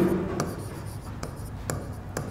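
Marker writing on a board: short ticks and scratches of the tip as the letters are formed, a few strokes a second.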